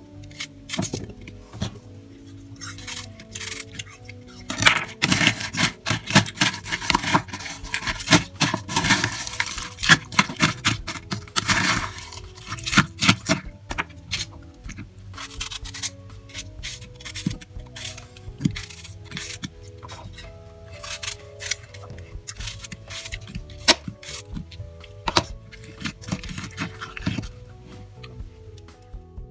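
Background music over a metal spoon clinking and scraping in a bowl as yogurt, apple pieces and cereal are stirred together. The clatter is densest from about five to twelve seconds in and sparser afterwards. At the start, a knife cuts apple pieces into the bowl.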